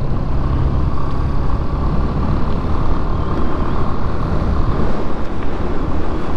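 Yamaha Fazer 250 single-cylinder motorcycle cruising steadily at about 60 km/h, its engine note mixed with wind rushing and buffeting over the camera microphone.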